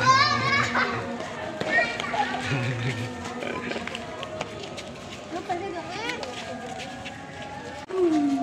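Children's excited shouts and voices, high-pitched cries near the start and again a few seconds later, with scattered light clicks and crackles in between.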